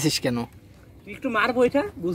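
Speech only: people talking in short bursts, with brief pauses between.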